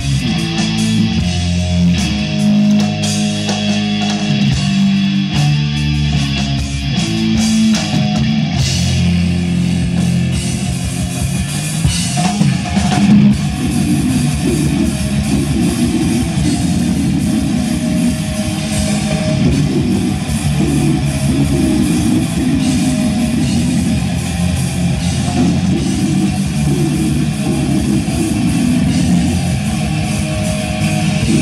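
Heavy metal band playing live: distorted electric guitars and bass over a drum kit. A slower riff of held chords gives way, about eight seconds in, to fast, dense picking and drumming.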